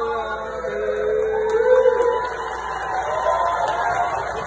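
A group of voices chanting or singing together, holding long notes that slide from one pitch to the next.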